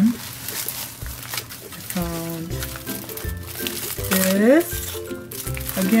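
Clear plastic sticker packages crinkling as they are handled and shuffled on a table. Pitched sounds that slide up in pitch come through as well, loudest about four seconds in.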